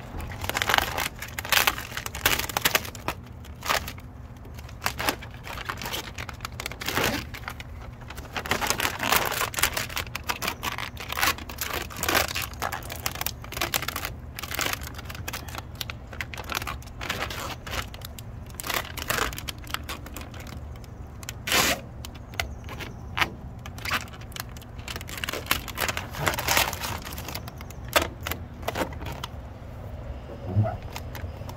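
Clear plastic transfer tape being peeled back off a vinyl decal, crinkling and crackling irregularly throughout as hands handle the sheet and rub the decal down against the van's painted panel.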